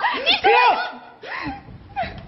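Laughter: high, rising-and-falling laughing cries in the first second, then a shorter burst of laughter about a second and a half in.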